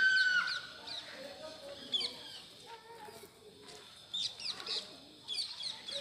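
Birds calling outdoors: one loud, drawn-out call right at the start that holds a steady pitch and then drops off, followed by scattered short, high chirps.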